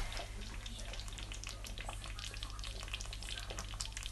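Thick groundnut stew simmering in a pot on the hob, giving a steady, irregular patter of small pops and sizzles.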